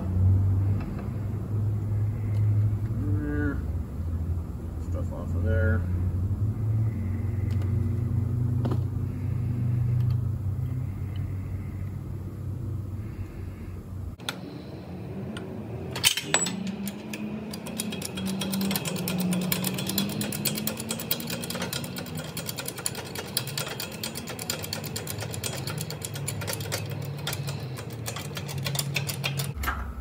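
Workshop handling of a hydraulic shop press and black-powder puck die: a steady low hum at first, then one sharp metal clink as the steel ram is set into the die, followed by a long run of faint rapid clicking as the press is worked.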